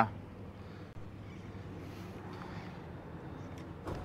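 Faint, steady outdoor background noise with a low hum and no distinct event.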